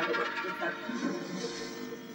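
A television playing a Hindi serial: background music with a little dialogue.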